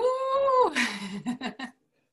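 A woman's drawn-out, high-pitched vocal exclamation that rises and is held for about a second, then breathy laughter.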